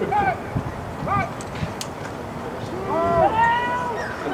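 Shouting voices at a football game as a play is snapped and run: two short calls in the first second or so, then a louder, long drawn-out yell about three seconds in, over a steady background of crowd and open-air noise.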